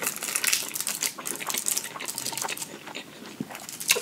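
Close-up mukbang eating sounds: chewing hibachi fried rice and steak with many small wet mouth clicks and crackles, mixed with a fork picking through the food on a foil-lined plate.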